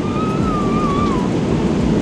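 Steady roar of a Boeing 777-300ER's cabin in flight. Over it is a thin wavering whine from the electric motor of the business-class suite's side divider as it rises, dropping in pitch and stopping a little over a second in.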